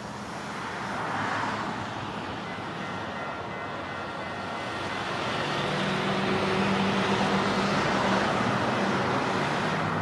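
Steady engine rumble and road noise, growing gradually louder, with a low hum that strengthens about halfway through.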